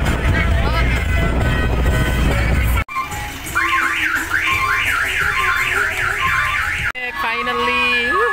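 Loud music with a heavy bass beat, cut off abruptly about three seconds in. Then an electronic siren whoops, rising in pitch about three times a second for some three seconds, before another abrupt cut to sliding horn-like tones.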